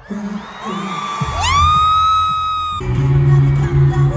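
Concert audio through a cut between clips: a single high note slides up and is held for about a second and a half, then loud pop music with heavy bass cuts in near the three-second mark.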